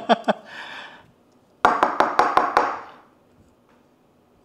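A man laughing in two bouts of quick, even 'ha-ha' pulses: the first tails off just after the start with a breath, and the second runs for about a second and a half near the middle.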